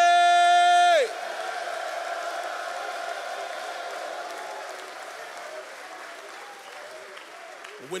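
A man's long, held shout of "glory" through a microphone cuts off about a second in, giving way to an audience of men cheering and applauding, which slowly fades.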